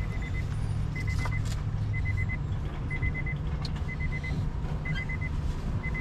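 Car idling with a steady low rumble, under a high electronic warning chime from the car that beeps about once a second.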